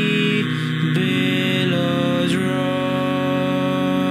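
Multi-tracked a cappella male vocal harmony, several voice parts of one singer holding sustained chords. The chord changes a few times in the first two and a half seconds, then is held steady.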